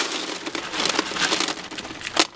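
Spent brass cartridge casings pouring from a plastic bag into a steel ammo can: a dense metallic clatter that thins into separate clinks toward the end.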